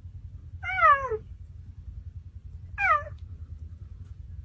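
Cheetah giving two high, mewing calls that fall in pitch: a longer one about half a second in and a shorter one near the three-second mark, over a low steady rumble.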